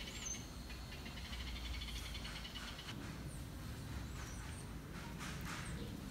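Faint garden ambience: small birds giving short high chirps now and then, with a faint rapid trill during the first half over a low steady rumble.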